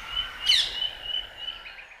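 Birdsong: high whistled notes, with a quick falling whistle about half a second in, fading out near the end.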